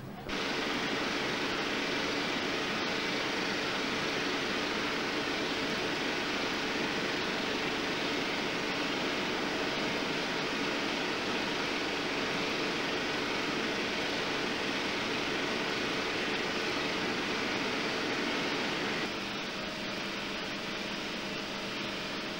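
Steady whirring machine noise with a low hum of several steady tones, from cinema projection-room machinery running. It starts abruptly just after the start and drops slightly in level about 19 seconds in.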